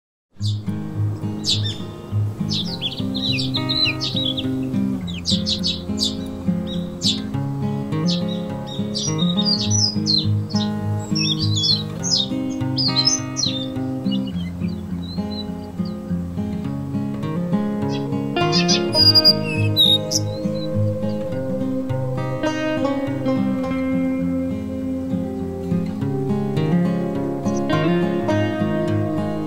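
Background music that begins about half a second in, with quick high bird-like chirps over it through the first half.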